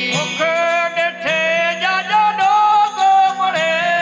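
Live Gujarati devotional bhajan: men's voices singing long, sliding held notes over a steady drone, with small hand cymbals ringing in a steady beat.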